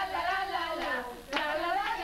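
Several women singing a song together in Spanish, with hand claps about every half second.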